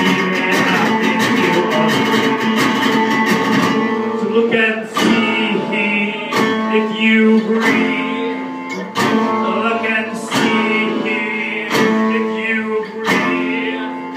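Acoustic guitar strummed live: a dense, fast strum for the first few seconds, then single accented chords about every second and a half, each left ringing.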